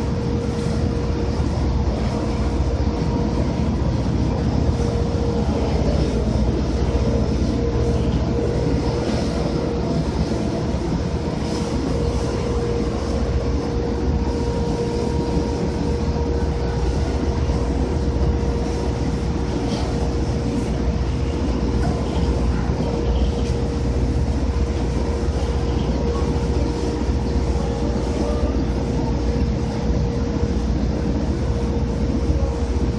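Heavy crane machinery hoisting a ship's hatch cover, running with a loud, steady rumble and a constant whine that holds one pitch.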